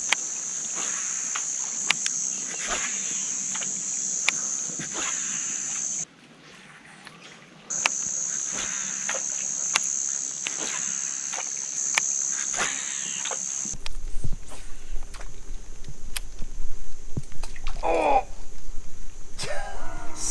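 A steady high-pitched insect drone, with scattered light clicks over it. It breaks off for about a second and a half around six seconds in. About fourteen seconds in it gives way to a low rumbling noise with louder, irregular knocks.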